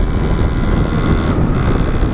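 Wind rushing over the microphone mixed with the running of a Honda 160 single-cylinder motorcycle engine working hard at road speed.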